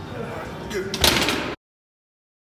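Sounds of a heavy chest-supported dumbbell row set: a loud, short rushing noise about a second in, then the audio cuts off abruptly to silence.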